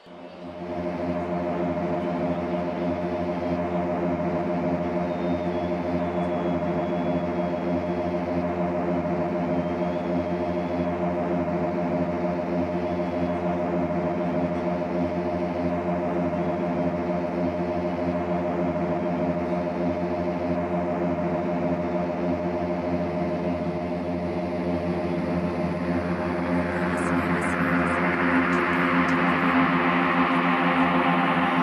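Techno DJ set: a sustained synthesizer chord drone with no beat, and a rising noise sweep building up over the last few seconds.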